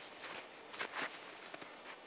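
Faint footsteps crunching in snow: a few soft steps, the loudest about a second in.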